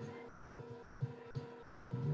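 Faint background music with a steady low beat and held tones.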